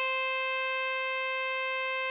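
Diatonic harmonica in C holding one long, steady blow note on hole 4 (C5).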